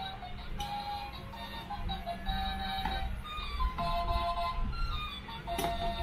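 A tabletop toy claw machine playing its built-in electronic jingle while the claw is worked, a simple melody of one note at a time over a low hum.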